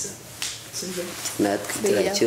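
A boy's voice in short phrases, with a single sharp click about half a second in.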